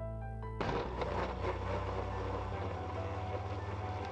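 An electric blender starts about half a second in and runs steadily, grinding sliced shallots, garlic and ginger with water into a wet paste. Background music plays under it.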